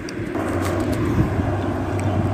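A steady low hum with a rushing noise under it, growing slightly louder about a third of a second in.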